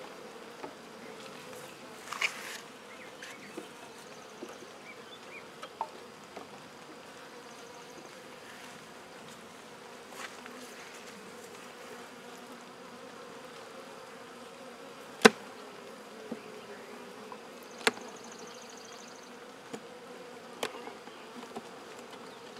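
Honey bees buzzing around an open hive, an even, steady hum, with a few sharp knocks as wooden frames are handled in the hive box, the loudest about fifteen seconds in and another near eighteen.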